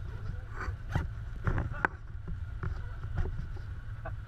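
Can-Am Commander 1000's V-twin engine running steadily at low speed, heard from inside the cab, with several short knocks and rattles through it.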